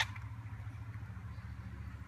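A low steady rumble, with one sharp click right at the start.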